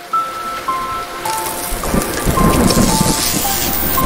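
Rain and thunder sound effects under a slow melody of single held notes. The hiss of rain spreads about a second in, and a low thunder rumble with crackles builds from about halfway through.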